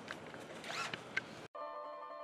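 Brief handling noise against an outdoor background: a short rising scrape and a sharp click. About a second and a half in, the sound cuts off abruptly and keyboard music with steady notes begins.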